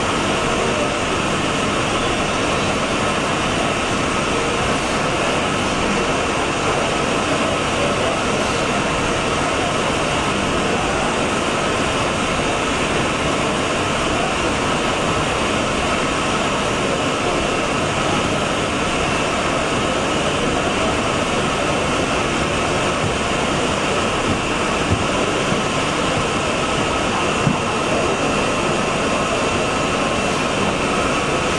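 Citizen Cincom M32-VIII LFV sliding-head CNC lathe running while it turns a brass part: a steady mechanical whirr with a faint high whine. Two small clicks come near the end.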